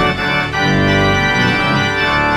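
Church organ postlude: full, sustained chords held, with a change of chord about half a second in.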